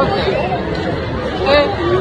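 Speech only: several people's voices talking over one another, with steady background noise underneath.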